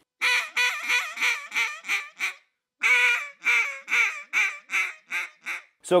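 Mallard duck call blown hard and loud in two rapid strings of quacks, about eight and then about nine, the second fading toward its end, each note bent up into the raspy Cajun squeal made by sliding the tongue to the roof of the mouth. The squeal imitates a hen calling with food stuck in her throat, a finishing note for ducks.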